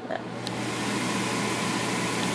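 Stove range-hood exhaust fan running steadily: an even whir with a low hum underneath.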